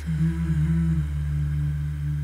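Song intro: a low, wordless hummed "mmm" held over a steady deep synth bass drone, its pitch shifting slightly in small steps.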